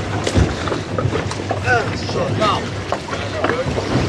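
Twin Suzuki outboard motors idling in a steady low hum, with wind on the microphone.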